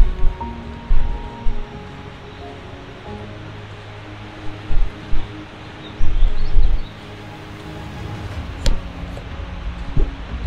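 Background music with held notes that change every second or so, broken by a few dull low thumps.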